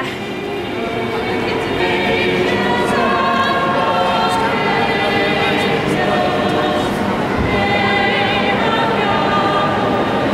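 A group of carol singers, mostly women, singing a Christmas carol together in long held notes. The singing grows fuller about a second and a half in, then stays steady.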